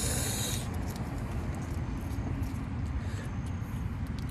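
A small McDonald's dipping-sauce container being torn and peeled open by hand: a short tearing hiss about half a second long at the start, then faint crinkling and ticks. A low steady rumble lies underneath throughout.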